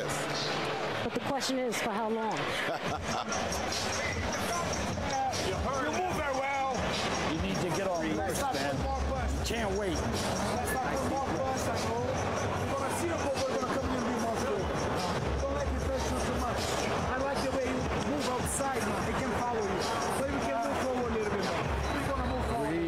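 Arena crowd between rounds: a steady din of many overlapping voices with no single speaker standing out.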